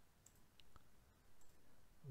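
Near silence with a few faint computer mouse clicks spread through it.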